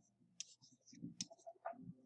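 Faint, scattered clicks and taps of a pen stylus on a writing surface while handwriting is drawn, about three sharper clicks in all.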